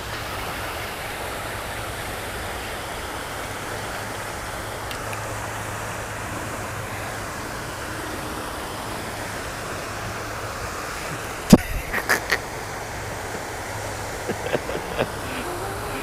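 Steady rush of falling water from a pond's spray fountain. About three-quarters of the way in there is one sharp, loud knock, followed by a few lighter clicks.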